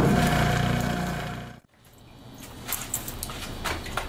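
Benchtop centrifuge's electric motor spinning its bowl at 3450 RPM, a steady hum that fades out and cuts off about a second and a half in. After that, only a faint background with a few light clicks.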